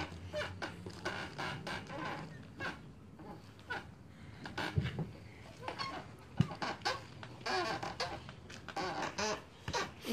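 Hands kneading a large mass of tamal masa (corn dough worked with salt, oil and anise) on a plastic-covered table: irregular wet squelches and pats of the dough being pressed and folded.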